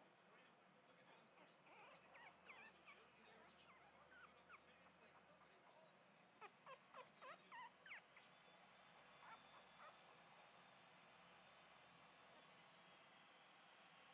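Young husky-pug cross puppies whimpering in short, high-pitched squeaky cries, with a quick run of about six louder cries a little past the middle.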